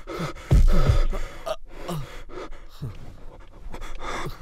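Fight-scene punch sound effect, a heavy low thud about half a second in, followed by men's short grunts and groans of pain, each falling in pitch.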